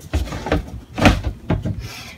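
Plastic scraping and rubbing as the lid of a blue poly 55-gallon drum and its PVC pipe fitting are turned and shifted by hand, in a few irregular strokes, the loudest about a second in.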